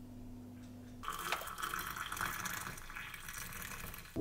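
Hot water poured from an electric kettle into a mug: a fluctuating splashing, filling sound that starts suddenly about a second in. Before it there is a faint steady low hum.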